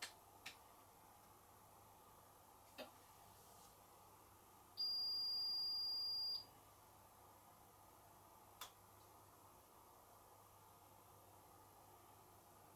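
A Hotpoint washing machine's end-of-programme beep: one long, steady, high-pitched electronic tone lasting about a second and a half, starting about five seconds in, signalling that the spin cycle has finished. A few faint clicks fall before and after it.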